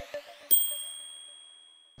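End of a logo intro sting. The music stops, and about half a second later a single bright, high ding rings and slowly fades away.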